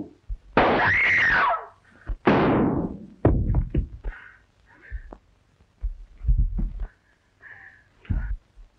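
A short cry that rises and falls in pitch, then a loud gunshot with a ringing tail about two seconds in, followed by a quick run of sharp knocks and later heavier thuds: a struggle with shots fired in a darkened room.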